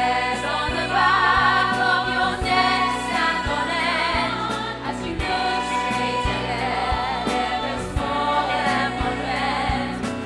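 Musical theatre ensemble singing in full chorus with vibrato, over a band accompaniment with a steady drum beat.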